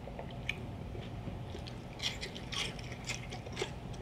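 Close-up crunching of a raw orange bell pepper strip dipped in hummus, being bitten and chewed, in irregular bursts of crisp crackles. The chewing is densest in the second half, over a faint steady low hum.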